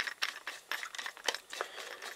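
Screwdriver blade working in the slotted battery cover on the base of a Ricoh KR-5 film camera, giving a run of small, irregular clicks and scrapes.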